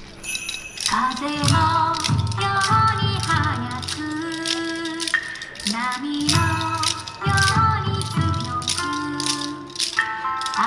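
Upbeat yosakoi dance music with a steady beat and the sharp rhythmic clacks of naruko clappers, coming back in about a second in after a brief lull.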